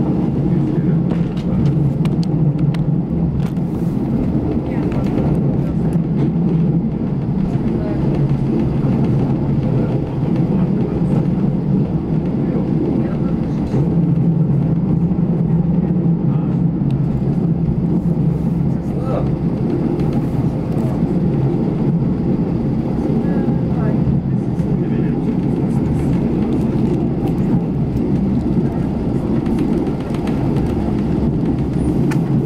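Small diesel railcar running, heard from inside the passenger compartment: a steady low engine drone with the rumble of the wheels on the track and occasional short clicks.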